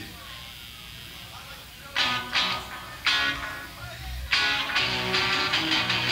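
Live rock band opening a song. After about two seconds of low room noise, a guitar strikes a few separate chords, and the full band comes in loudly a little after four seconds.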